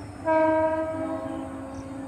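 EMU local train's horn sounding one long blast. It starts suddenly about a quarter of a second in, is loudest for the first half second, then holds a little softer over the train's steady running noise.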